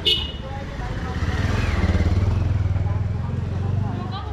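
Motorcycle engine running as the bike rides up and passes close, growing louder from about a second in and loudest through the middle. A brief sharp high sound comes right at the start.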